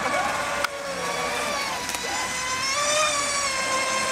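Brushless electric RC speedboat motors whining at speed across the water, the high whine wavering up and down in pitch with the throttle.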